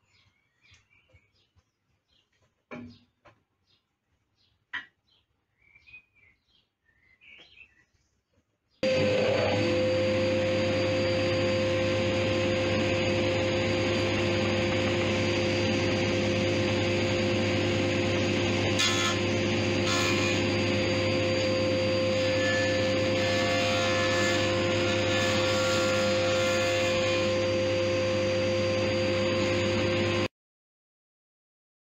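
A 12-inch combination planer-jointer with a helical cutter head starts suddenly about nine seconds in and runs loud and steady, with a constant hum, while a board's edge is fed across the jointer bed. Before it starts there are only faint bird chirps and a couple of light clicks.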